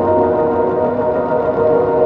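Ambient background music of long held chords with no beat.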